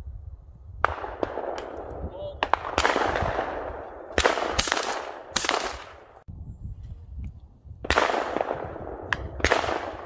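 Shotgun shots at a clay target stand: about six sharp reports fired over several seconds, some close together. Each report has a long fading tail.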